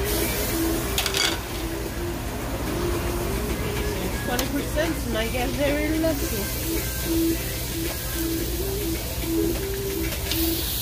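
Raw meat sizzling on a tabletop Korean barbecue grill, the sizzle growing louder about six seconds in as more meat is laid on with tongs. A clink comes about a second in, with background music and voices throughout.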